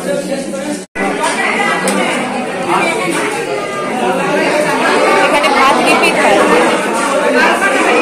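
Many people chattering at once in a crowded dining hall, with no single clear voice. The sound cuts out for an instant about a second in.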